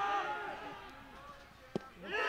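A commentator's voice trails off, then after a quiet stretch comes a single sharp pop near the end: a baseball smacking into the catcher's mitt on a pitch taken for strike three at the knees.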